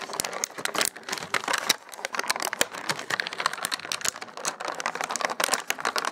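Clear plastic blister tray crinkling and clicking as hands work an action figure loose inside it: a dense, irregular run of small cracks and crackles.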